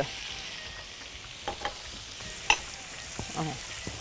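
Diced garlic and bell and hot peppers sizzling steadily in hot oil in a pan as vinegar is poured in. A few sharp clicks sound over the sizzle.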